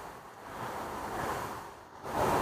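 Faint, steady outdoor background noise: an even rushing hiss with no distinct events.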